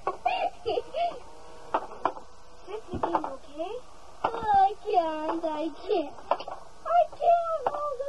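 Young children's high-pitched voices, exclaiming and squealing while they play, with a few short sharp clicks in between.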